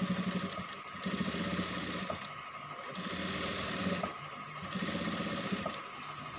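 Industrial sewing machine stitching satin fabric in three short runs, stopping briefly between them.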